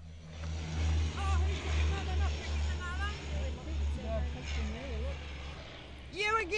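Low engine-like rumble that pulses two or three times a second under a steady hiss, with faint voices of people talking in the background.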